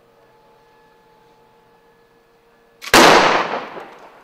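A volley of near-simultaneous revolver shots from several fast-draw shooters firing at once, about three seconds in after a quiet wait. The shots are sudden and loud, and their ringing dies away over about a second.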